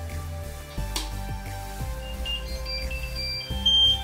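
Short high electronic beeps at several pitches in the second half, ending in one loud beep near the end, over background music: the Anycubic i3 Mega 3D printer's buzzer sounding as the printer powers up.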